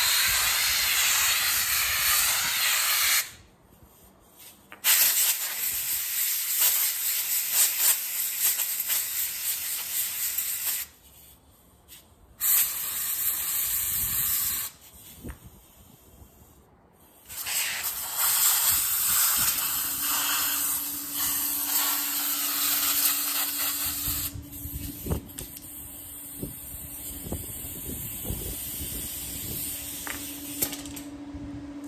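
Compressed-air blow gun blasting air through a cut-open aluminum oil cooler to blow oil and aluminum particles out of its stacked channels. The air hisses in four long blasts with short pauses, then softer hissing near the end, joined by a steady low hum and a few light knocks.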